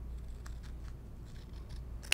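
Small Gingher embroidery scissors snipping through cotton quilting fabric: a few faint, quick snips, trimming excess fabric from an applique piece.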